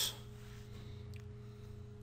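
Low, steady electrical hum made of a few unchanging tones, with one faint click about a second in.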